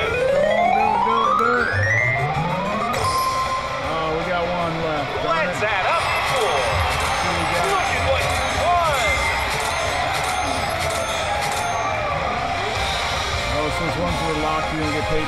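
Press Your Luck slot machine's bonus sound effects. A tone rises over the first two seconds as the last spin plays out, then win music and jingles run on while the credit meter counts up the bonus win.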